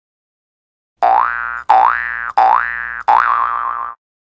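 Cartoon-style sound effect of an animated subscribe-button graphic: four quick pitched tones, each opening with a click and sliding upward, the last one ending in a wobble. It starts about a second in.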